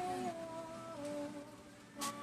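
A person humming a few long notes that step slowly downward, fading toward the end.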